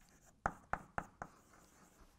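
Chalk writing on a blackboard: four short, sharp strokes about a quarter second apart, then a lull near the end.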